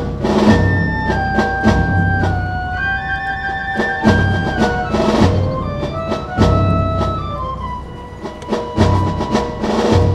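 Live band music: a slow melody of long held notes that steps gradually downward, over heavy drum hits and drum rolls every few seconds.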